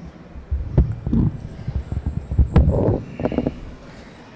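Handling noise from a podium microphone being adjusted on its stand: a run of uneven thumps, knocks and rubbing picked up by the mic itself, starting about half a second in.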